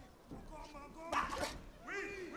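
Boxing bout sounds: a sharp smack about a second in as the boxers trade punches, with short shouted calls from ringside starting near the end.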